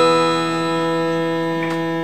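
Electronic keyboard on an organ-like voice holding a sustained chord of steady tones, easing slightly in volume about half a second in.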